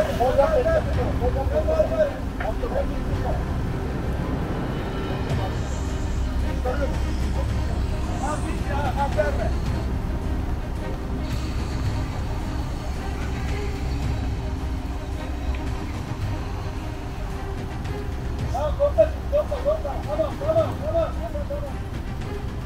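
Off-road 4x4 engines running steadily at low revs, a constant low rumble, with short muffled shouts now and then, most near the end.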